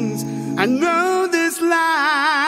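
Doo-wop style vocal harmony singing: a held chord gives way, about half a second in, to a rising lead voice singing long notes with wide vibrato.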